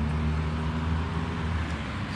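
Road traffic: a steady low engine hum with passing-car noise.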